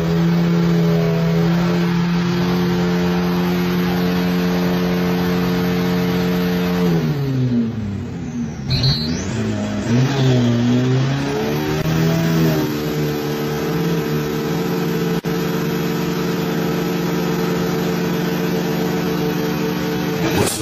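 Drag car's engine held at steady revs on the start line. The revs drop away about seven seconds in and blip up and down for a few seconds, then are held steady again.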